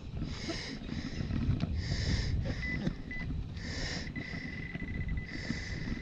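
Metal detecting pinpointer sounding on a target in a freshly dug plug of sod. It gives a couple of short high beeps about halfway, then a steady high tone. Breathy hissing about every second and a half, and a low wind-like rumble, run under it.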